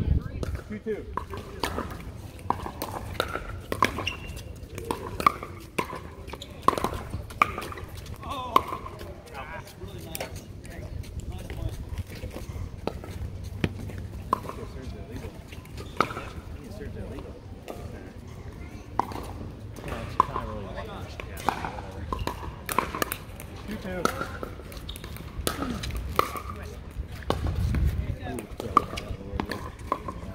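Pickleball paddles striking a plastic ball, sharp pops at irregular intervals through rallies, with voices and a low rumble underneath.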